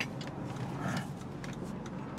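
Low, steady cabin noise of a 2002 Chrysler Sebring convertible driving slowly, with a few faint ticks.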